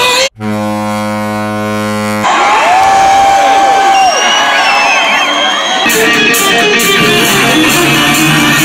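Live rock band heard loud from within the crowd. After a brief dropout, a steady chord is held for about two seconds. Then comes crowd noise with a long held vocal note, and the full band with drums comes in about six seconds in.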